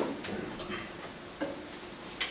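About four light, unevenly spaced clicks of laptop keys being pressed to move through presentation slides.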